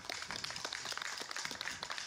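Audience applause: many overlapping hand claps.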